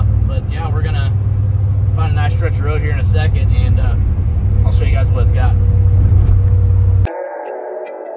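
Steady low drone inside the cab of a 1993 Chevy pickup with a supercharged LT5 V8 swap, cruising at highway speed. About seven seconds in it cuts off suddenly and guitar music with effects starts.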